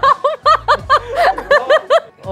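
A woman laughing hard: a fast run of high-pitched 'ha' pulses, each rising and falling in pitch, about five a second.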